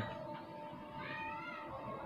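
A single faint animal call about a second in, rising then falling in pitch and lasting about half a second, over a faint steady tone.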